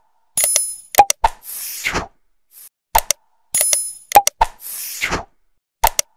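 Subscribe-button animation sound effects: sharp mouse-style clicks, a bright bell-like ding and a pop, followed by a whoosh. The set repeats about every three seconds.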